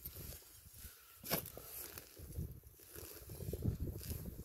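Digging shovel cutting into grassy sod to dig a plug, with one sharp click a little over a second in, then uneven scraping and rustling of soil and grass as the plug is worked loose.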